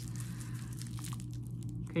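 Soft crinkling and rustling of a plastic bubble-wrap pouch being handled and lifted, with a few faint crackles in the second half.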